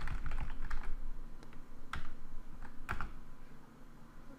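Typing on a computer keyboard: a quick run of keystrokes in the first second, then a few scattered single clicks.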